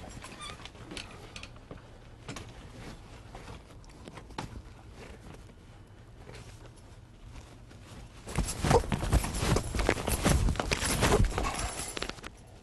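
A person's shoes on a hard office floor: soft scuffs and a few light knocks at first, then, from about eight seconds in, a run of loud, rapid foot thuds and scrapes. These are a man trying to kick himself in the face.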